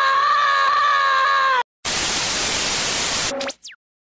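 A cartoon boy's long held yell, cut off sharply about a second and a half in. After a brief gap comes a loud burst of TV static lasting about a second and a half, ending with a short high whistle that falls in pitch.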